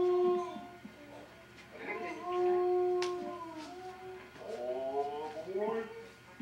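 Long wailing cries held on one pitch, three in a row, the last one sliding upward.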